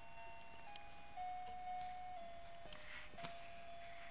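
Faint, simple electronic tune of single steady notes played one after another, the kind of chip melody a baby bouncer seat's toy bar plays.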